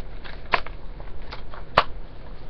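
Plastic DVD case being handled: a few sharp clicks, the loudest near the end.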